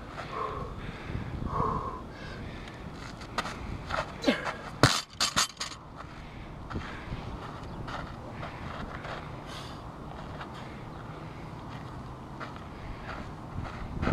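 A 115 lb barbell with bumper plates is dropped onto the dirt after a snatch attempt about five seconds in: one heavy impact with a brief rattle of the plates, just after a short grunt of effort.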